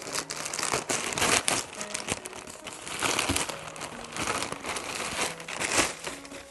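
Thin plastic garment bag crinkling and rustling irregularly as it is handled and pulled open, with a garment drawn out of it.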